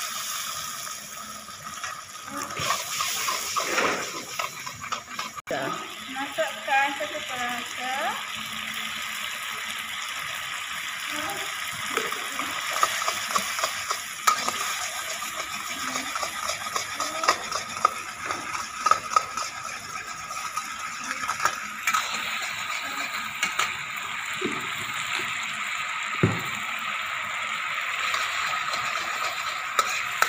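Chili sauce sizzling and bubbling in a hot wok as water is poured in, while a metal spatula stirs it, scraping and tapping against the wok. The sizzling holds steady, and the spatula's clicks grow sharper and more frequent in the second half.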